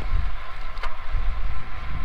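Wind noise on a wired clip-on lapel microphone worn by a cyclist riding a road bike, a steady low rumble, with one short click a little under a second in.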